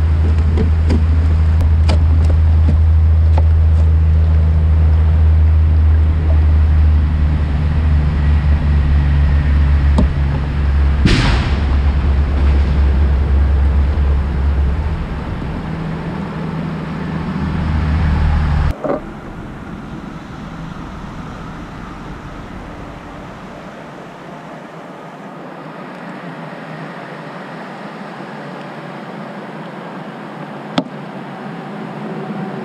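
A single loud bang from a tractor-trailer truck's tyre blowing out, about eleven seconds in, with a trailing echo that fades over a second or so. Under it is a steady low wind rumble on the microphone, which stops suddenly a little before twenty seconds in.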